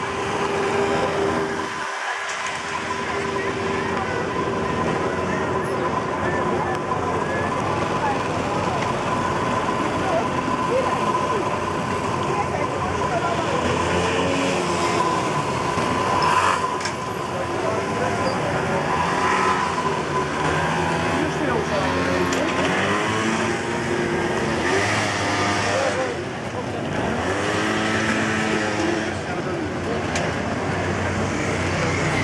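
Street traffic: cars and scooters passing close one after another, engine pitch rising and falling as each goes by, over a steady hum of voices.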